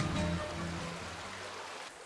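Background acoustic guitar music fading out, over the steady rush of a shallow stream.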